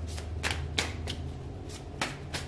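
Tarot cards being shuffled by hand: a run of short, papery swishes, about five in two seconds, over a steady low hum.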